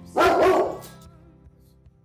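A dog barks once, a single woof about half a second long, over background music that dies away in the second half.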